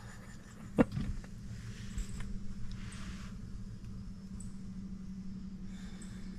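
Electric seat motor humming steadily as a fully reclined power seatback rises, starting after a sharp click about a second in.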